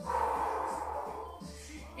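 A woman breathing out audibly through the mouth: one long exhale that fades away over about a second.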